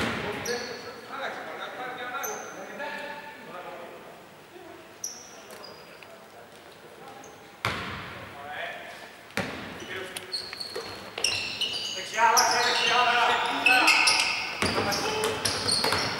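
Live basketball court sound in a large, echoing hall: players' voices calling out, short high sneaker squeaks on the hardwood floor, and the ball bouncing. A few sharp thuds land near the middle and again toward the end, and the voices are loudest over the last few seconds.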